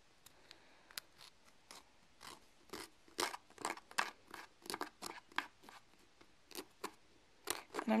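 Nail file drawn in short downward strokes across the edge of a fingernail, filing off the overhanging excess of a nail polish strip. The strokes come irregularly, about two a second, and get louder after the first few seconds.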